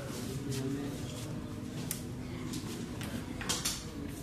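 Indistinct murmur of several people's voices in a small stone room, with a short, louder rustle about three and a half seconds in.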